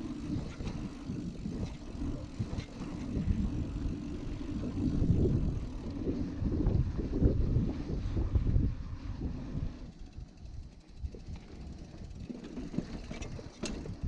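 Mountain bike tyres rolling over a sandy dirt track, a rough low rumble with wind buffeting the helmet or chest camera's microphone. The rumble eases about ten seconds in as the ride reaches smoother ground.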